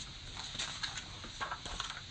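Pages of a hardcover picture book being handled and turned: a few light paper rustles and clicks.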